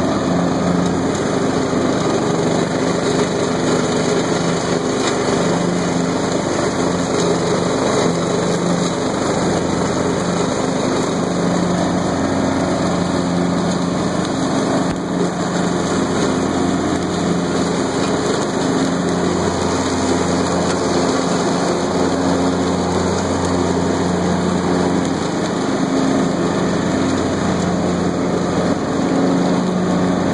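Troy-Bilt Horse XP 20-horsepower lawn tractor engine running steadily at about two-thirds throttle with the mower deck engaged, cutting through thick field grass and brambles. The engine holds an even speed under the load without bogging.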